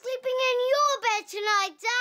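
Children's voices chanting in a sing-song, a run of held notes on nearly the same pitch with short breaks between them.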